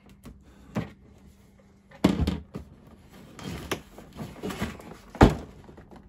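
A cardboard box being handled and opened: a short knock, then a louder stretch of cardboard scraping and rustling at about two seconds, and a sharp thump near the end.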